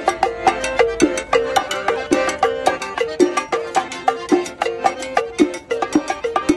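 Cumbia played on a button accordion over a steady beat of scraped güiro and hand percussion: a bright, rhythmic melody with the percussion keeping even time throughout.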